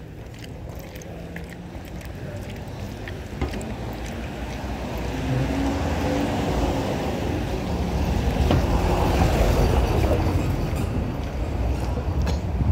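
Street traffic: a motor vehicle rumbling past, growing louder over several seconds, loudest about nine seconds in, then easing off.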